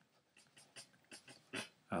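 Faint stylus strokes on a tablet screen: a scatter of short taps and scratches as digits are handwritten.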